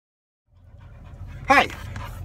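A dog panting close to the microphone inside a car, over the car's low steady rumble, which fades in after a moment of silence.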